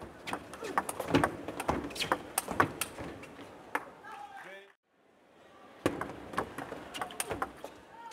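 Table tennis rallies: a celluloid ball clicking sharply off rubber bats and bouncing on the table in quick, irregular strikes, over crowd noise in a large hall. The sound cuts out briefly about halfway through, then a second rally of clicks follows.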